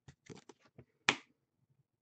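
Hands handling a stack of trading cards on a wooden desk: several small clicks and taps, with one sharp snap about a second in.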